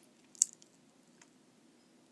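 A single sharp click about half a second in, followed by a few faint ticks over a low, steady room hum.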